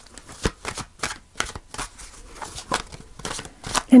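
A tarot deck being shuffled by hand: a quick, irregular run of soft card clicks and slaps.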